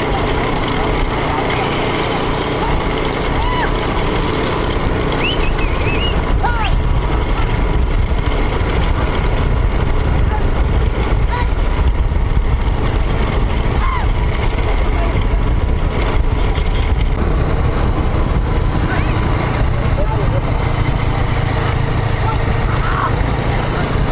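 Steady low rumble of a vehicle engine with wind noise, under shouting voices and a few short, high, whistle-like calls.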